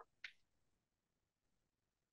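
Near silence, broken once near the start by a brief faint tick.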